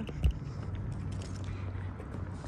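A low, steady outdoor rumble with a faint hum, and a single soft thump about a quarter second in.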